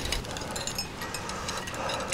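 Light metallic clicks and rattles from the arms of a pigeon decoy rotary being handled and fitted together, starting with a sharper click.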